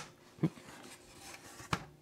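Styrofoam packaging lid being lifted open, with faint rubbing and two brief knocks, the second sharper, near the end.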